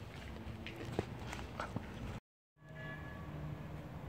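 Outdoor street ambience with scattered clicks and rustle from a handheld phone carried while walking. The sound drops out completely for a moment about halfway through, then returns as a steady low hum with a faint tone.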